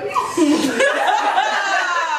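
A group of young women laughing together, voices overlapping and rising and falling in pitch.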